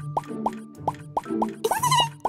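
Children's cartoon background music with a run of short, rising bloop sound effects, a few a second, and a brief squeaky cartoon sound near the end.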